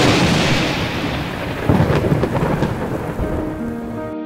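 A thunderclap breaks suddenly over steady rain and rolls on, with a second loud rumble about two seconds in. Sustained music notes come in near the end.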